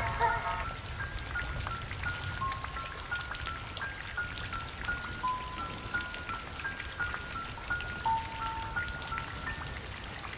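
Soundtrack music: the last sung note fades about half a second in, leaving a slow, sparse melody of high single plinked notes, glockenspiel- or music-box-like, over a steady hiss scattered with faint ticks like rain.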